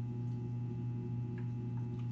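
Steady low hum of room tone with a couple of faint small ticks in the second half.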